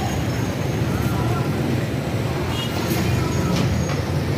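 Steady rumble of road traffic, with faint voices of people talking in the background.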